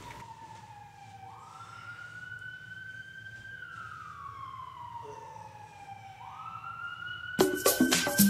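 An emergency vehicle's siren wailing: its pitch jumps up quickly, then sinks slowly, about twice over, with a faint low hum beneath. Near the end, a beat with sharp percussive hits comes in over it.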